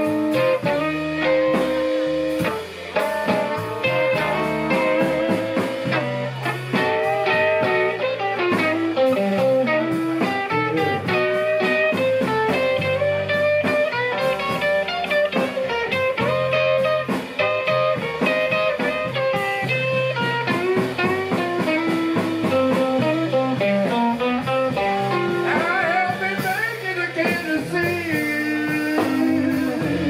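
Live blues band: a Stratocaster-style electric guitar playing a solo over a walking bass line and drums.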